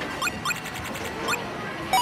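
Background music: an instrumental beat with short, rising chirp-like notes repeated in quick succession.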